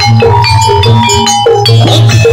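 Loud percussion-led music with bright metallic notes struck in a quick repeating pattern over a low steady beat, typical of the Javanese gamelan accompaniment for a barongan dance.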